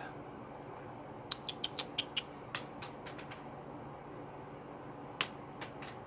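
A quick run of about eight sharp clicks, then a single louder click about five seconds in, over a steady low hum.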